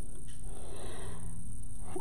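Steady low background hum, with faint rustling of ribbon as fingers curl the bow's tails.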